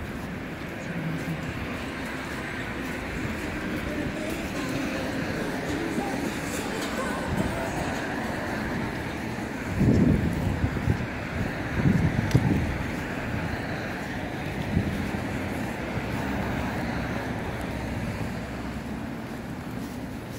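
City street ambience in falling snow: a steady hum of road traffic, with two louder low rumbles about halfway through.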